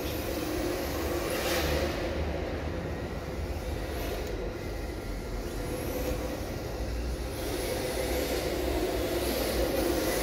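Electric RC drift car (MST RMX 2.0 rear-wheel-drive chassis) sliding on smooth concrete, its motor whining up and down in pitch with the throttle over a steady low hum.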